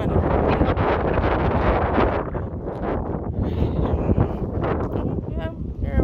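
Wind buffeting a phone microphone, making a loud, fluctuating rumble, with faint voices in the background.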